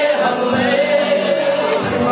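A man singing into a handheld microphone, holding one long note through most of the two seconds, accompanied by an acoustic guitar.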